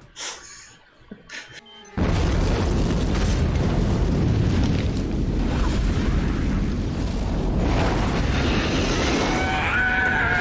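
A film-soundtrack explosion: after two quiet seconds a sudden loud blast, followed by a long, steady, deep rumble that holds to the end.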